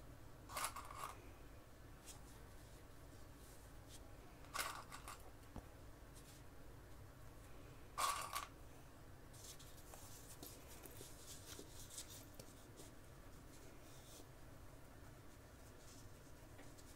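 Three short, sharp clicks about four seconds apart as Wonder Clips are snapped onto the folded edges of a fabric zipper panel, followed by faint rustling of fabric and zipper being handled.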